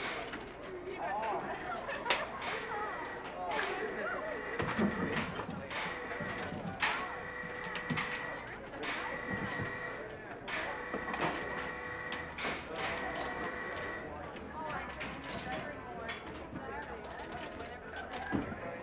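Penny-arcade background: indistinct murmured voices with scattered clicks and knocks, and steady electronic tones that come and go until a few seconds before the end.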